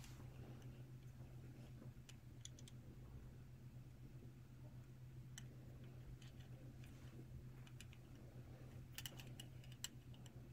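Near silence: a steady low hum with a few faint, scattered clicks from a silver collar necklace and its pendant being handled and turned over in the hands.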